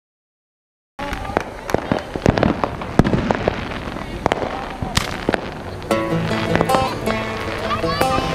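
Fireworks going off in an irregular run of sharp pops and bangs, starting abruptly about a second in. About six seconds in, music with held notes starts over them.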